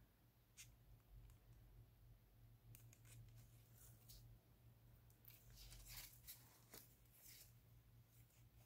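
Near silence: faint, scattered scratches and crinkles of gloved fingers rubbing a sheet of nail transfer foil down onto a glued rock, over a low steady hum.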